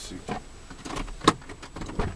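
A few short, sharp clicks and knocks from handling things inside a stopped car's cabin, the loudest about a second and a half in.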